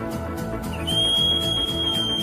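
Instrumental music with a steady beat, led by a pan flute. About a second in, a high, pure held note slides up into place and is sustained, sagging slightly in pitch.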